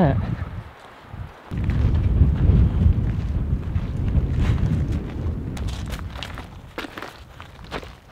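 Wind buffeting the camera microphone during a walk, with footsteps crunching on a loose gravel trail, the crunches standing out more in the second half.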